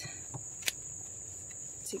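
A single sharp snip of scissors cutting through a Swiss chard stalk just under a second in, with a fainter click before it. A steady high-pitched insect drone runs underneath.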